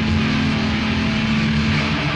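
Old-school death metal from a band's rehearsal tape, instrumental: distorted electric guitars holding a steady low note over bass and drums.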